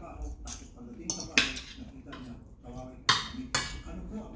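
Metal spoons and forks clinking and scraping against plates as two people eat, with the sharpest clinks about a second and a half in and twice near the end.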